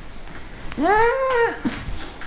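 A person's single drawn-out, high vocal sound, about a second in, rising then falling in pitch like a mock meow, followed by a brief laugh.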